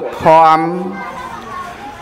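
A man's voice preaching in Khmer, holding one long, drawn-out syllable at a steady pitch, then trailing off into a short pause.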